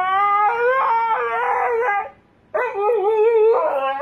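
Siberian husky howling in long calls that waver up and down in pitch, breaking off briefly about two seconds in before it howls again.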